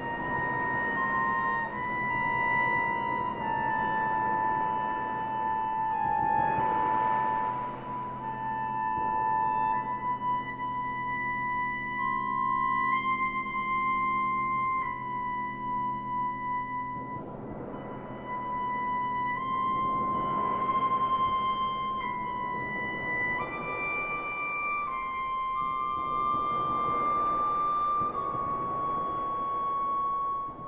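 Slow contemporary orchestral music: long held high notes that move slowly from pitch to pitch over a sustained low chord, with a few gentle swells.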